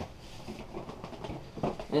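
Faint scuffing and handling of a cardboard box as it is gripped and lifted off a table, with a couple of light knocks near the end.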